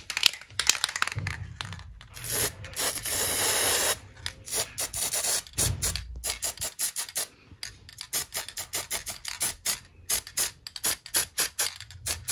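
Aerosol can of gold spray paint hissing onto metal cabinet handles: one long spray of about two seconds, then a run of short, quick bursts.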